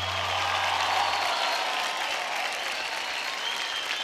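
Studio audience applauding, a steady wash of clapping, as the last held low note of the backing music fades out about a second in.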